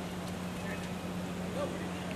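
Quiet outdoor background with a steady low hum and no distinct event.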